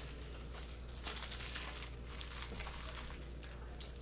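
Plastic wrapping crinkling and crackling in hands, with some tearing, as a shrink-wrapped box of trading cards is opened.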